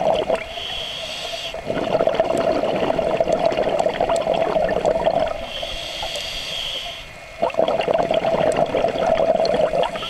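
Scuba diver breathing through a regulator underwater: a short hissing inhale followed by a long stream of bubbling exhaust, twice over, with a third inhale starting at the end.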